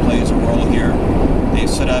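A car driving along a highway, heard from inside the cabin: a steady, loud rumble of tyres on the road and the engine running.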